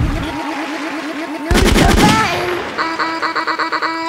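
Edited electronic sound-effect transition. It opens with a thump and a fast buzzing pulse, then a loud burst of rapid, shot-like crackles about a second and a half in, and near the end a stuttering pattern of high electronic beeps.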